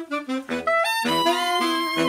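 Saxophone quartet with clarinet playing a march-like tune: short, detached low notes about twice a second under held melody lines, with brief breaks between phrases in the first half second.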